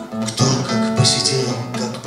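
Acoustic guitar strummed in chords as song accompaniment, with fresh strokes about half a second and a second in.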